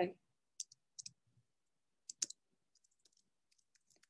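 Faint computer keyboard keystrokes: a handful of short, scattered clicks as a name is typed in, unevenly spaced with gaps between them.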